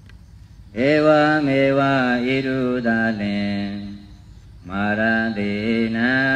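A man's voice chanting a Buddhist recitation in long, steadily held notes. One phrase starts about a second in and runs to about four seconds; a second phrase begins near the end.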